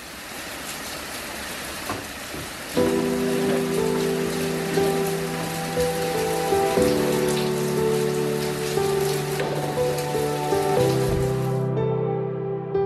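Steady rain falling, a continuous hiss with faint patter, which cuts off suddenly just before the end. About three seconds in, slow, soft music with long held chords comes in over it.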